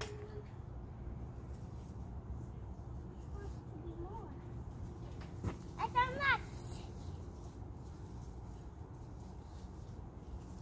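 Quiet outdoor background with a low steady rumble, broken about six seconds in by a child's short, high-pitched call.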